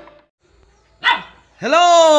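A dog barks once, a short sharp bark about a second in. Near the end a man starts a loud, drawn-out greeting.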